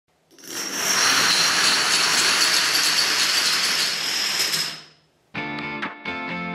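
Plastic dominoes toppling in a long cascade, a rapid continuous clatter that builds within half a second, holds for about four seconds and dies away. Strummed guitar music starts near the end.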